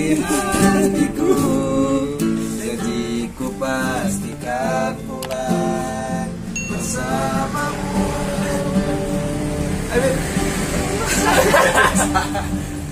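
Nylon-string classical guitar played as accompaniment, strummed and picked, with a man's voice singing along to it.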